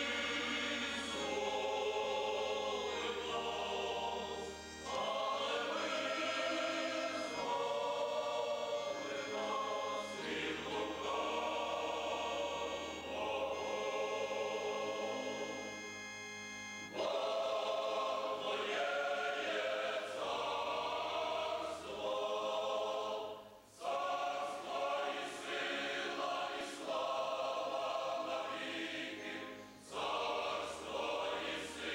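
Large mixed choir of men's and women's voices singing a Christian hymn, in long phrases with short breaks between them.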